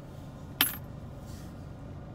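A single sharp click with a brief ring about half a second in, over a steady low hum.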